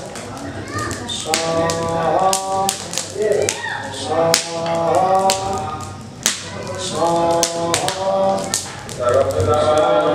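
Wood fire in a havan pit crackling and popping with sharp, irregular clicks. A voice chants in short held phrases over it.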